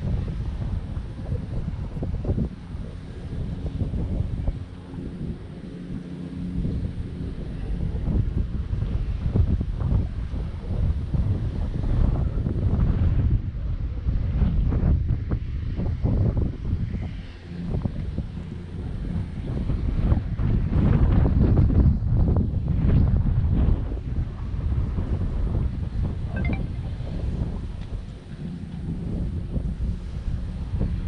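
Wind buffeting the microphone: a rough, gusty rumble that swells and eases, loudest about two-thirds of the way through.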